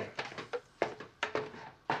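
A spoon stirring pasta in a tall stainless-steel stockpot, knocking against the sides of the pot several times at an uneven pace.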